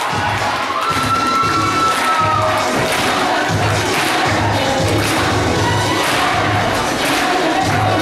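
Music with a steady beat, about two thumps a second, playing over a crowd cheering and shouting; one long, held shout stands out about a second in.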